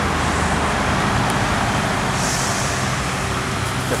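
Heavy truck engine running steadily at low speed, over a constant wash of road traffic noise.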